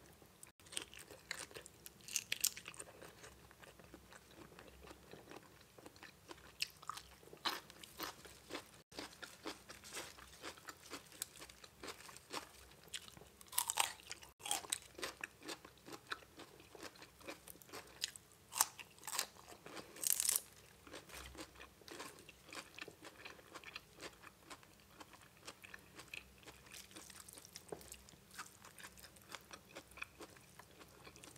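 A person chewing and crunching raw shrimp pickled in fish sauce and fresh raw vegetables close to the microphone, with wet mouth clicks and crisp bites scattered throughout. A few louder crunches come in the middle.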